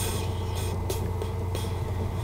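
A steady low hum with faint hiss, the background noise of a small room between sung lines, with a small click right at the start.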